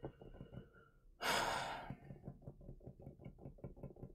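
A man sighs once, about a second in: a single breath pushed out for under a second. Faint, even ticking, several ticks a second, runs underneath.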